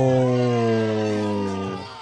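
A man's long, drawn-out "ohhh" exclamation of amazement: one held low note that sags slightly in pitch and fades out just before the end.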